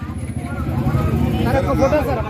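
A man's voice calls out a name near the end, over a steady low background rumble and faint crowd babble.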